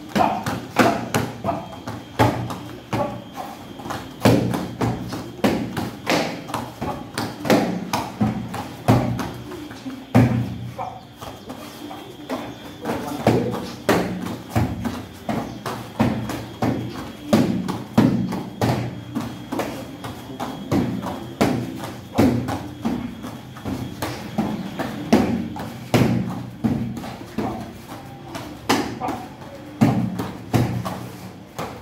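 Taekwondo kicks striking a handheld kicking target over and over, a long run of sharp slapping hits about one or two a second, with feet thumping on foam mats between them.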